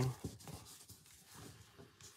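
Faint rustling and rubbing of cardstock as hands position and press a small stamped paper circle onto a scalloped cardstock circle, with a few light ticks.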